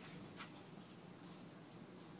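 Near silence: faint room tone, with one short faint tap about half a second in.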